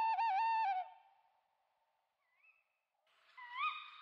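A child's voice hooting like an owl, a high wavering 'uhu' lasting under a second. A faint short rising tone follows about midway. Another rising hoot starts just before the end.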